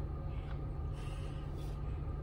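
Vehicle engine idling, heard inside the cabin as a steady low hum, with a faint hiss of air as the air conditioning comes on.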